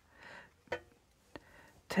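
Oracle cards being handled: a soft brief slide of card, then two light clicks about half a second apart, with speech starting near the end.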